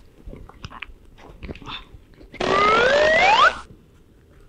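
Faint small clicks and smacks, then, a little past halfway, a loud sound about a second long: a hiss with a whistle that rises in pitch, starting and stopping abruptly, a sound effect added for comic effect.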